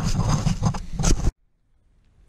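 Rustling and scraping noises with scattered sharp clicks, cut off abruptly about a second in, leaving near silence.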